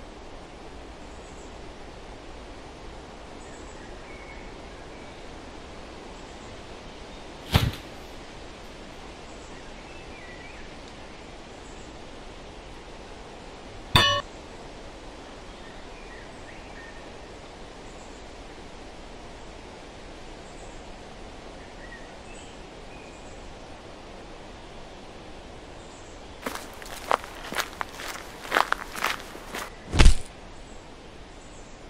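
Steady outdoor hiss broken by two sharp hits, about seven and fourteen seconds in, the second with a ringing tone. Near the end comes a quick run of sharp knocks and clacks as two men struggle over a wooden stick in a staged fight.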